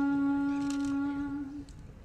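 A young girl singing solo and unaccompanied into a microphone, holding one long steady note that fades out about a second and a half in, followed by a short breath-pause.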